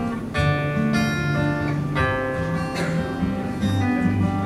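Steel-string acoustic guitar strummed live, its chords ringing on between strums, with fresh strums about every second.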